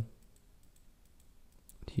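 A few faint, sharp clicks from computer input while a brush is worked in Photoshop, over quiet room tone.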